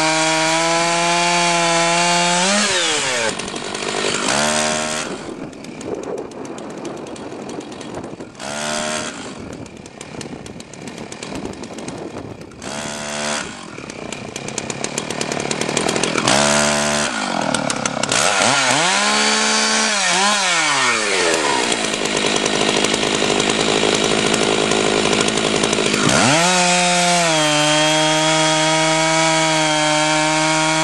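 Chainsaw cutting through a log at full throttle, its revs dropping away about two and a half seconds in. Over the next twenty seconds it sits at a lower speed with several short revs up and down. Near the end it goes back to full-throttle cutting.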